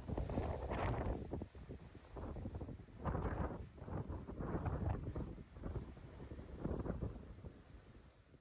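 Wind blowing across the microphone in gusts, a rough, low rumble that swells and drops several times and fades near the end.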